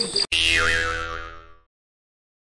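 A cartoon 'boing' sound effect added in editing: one springy pitched tone that fades out over about a second and a half, then cuts to dead silence.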